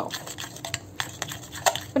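Metal spoon stirring a thick oat, egg and cornstarch batter in a glass bowl, with irregular clinks and scrapes of the spoon against the glass.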